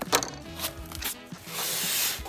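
Background music under the handling of a cardboard shipping box: a few knocks and clicks as the flaps are opened, then a louder rustle near the end as packing is pulled out.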